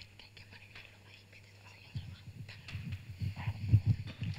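Faint whispering between presenters, with soft, irregular low thumps in the second half.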